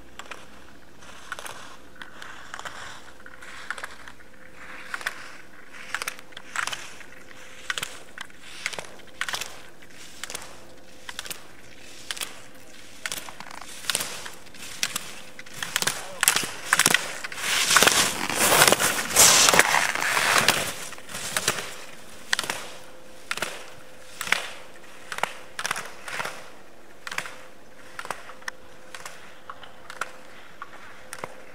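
Slalom skis scraping and carving on hard snow, one sharp scrape with each turn about once a second. The scrapes grow louder and run together midway as the skier passes close, then go on at the same pace.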